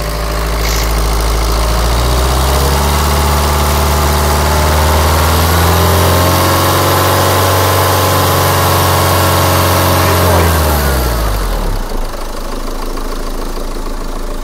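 Renault 1.9 dCi four-cylinder turbodiesel running on a test run after its cracked intercooler pipe was repaired. It idles, revs up slowly over a few seconds, holds the higher speed for about four seconds, and drops back to idle near the end. No hiss of a boost leak comes from the repaired pipe.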